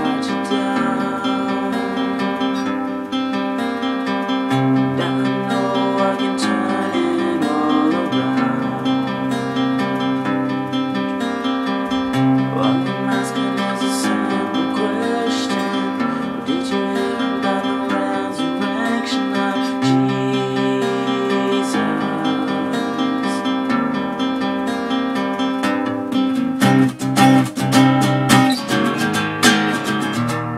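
Steel-string acoustic guitar strummed through a song's chord progression, the chords ringing on. Near the end the strumming grows harder and more accented.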